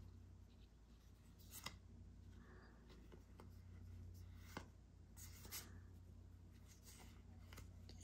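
Near silence with faint rustling and a few light clicks from Pokémon trading cards being handled, over a steady low hum.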